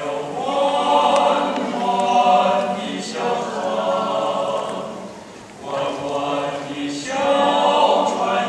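Men's choir singing in parts, sustained phrases with a short breath break about five seconds in before the next phrase swells up.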